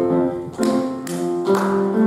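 Piano accompaniment playing steady chords, with new chords struck about half a second in and again about a second later.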